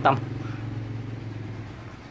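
A motor vehicle's engine drone that fades away, over a steady low hum.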